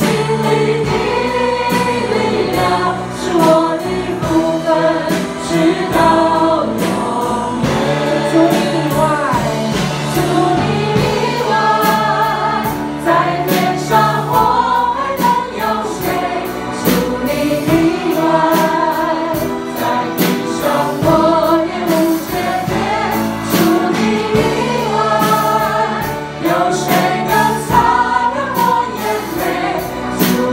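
A worship team of male and female voices singing a Chinese praise song into microphones, over band accompaniment with a steady beat.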